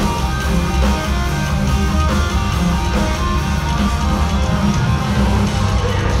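Metal band playing live at full volume: distorted electric guitars over bass and drums, continuous and dense.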